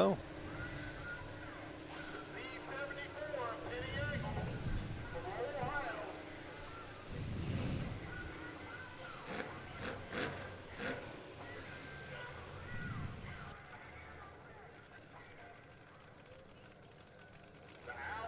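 Low rumbles of demolition derby car engines rising and falling a few times, under faint, indistinct voices.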